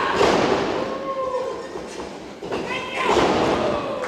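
Wrestlers' bodies hitting the boards of a wrestling ring, a loud thud right at the start and another about three seconds in, each ringing out in a large hall, with voices shouting in between.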